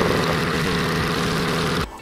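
The "money printer go brrr" meme sound: a steady buzzing brrr with a fast rattle, cutting off near the end.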